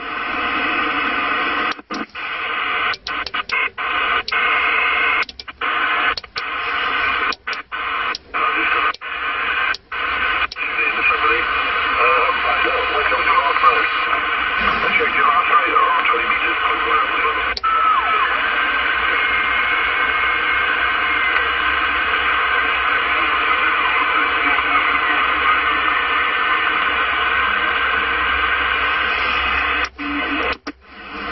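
A CB radio (CRT SS6900N) receiving distant stations on the 27 MHz band over propagation: voices half-buried in static through the radio's speaker. The signal cuts out again and again during the first ten seconds, then settles into steady hiss with faint voices over it.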